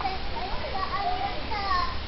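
Distant, unintelligible voices, children's among them, calling out in short rising and falling cries, over a steady low rumble.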